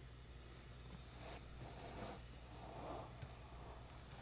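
Faint, soft rustling of crocheted yarn pieces being handled and pressed together, in a few short spells over a low steady hum.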